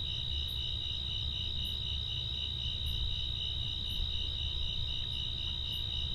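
Crickets trilling steadily, a continuous high-pitched chorus, over a low steady rumble of background noise.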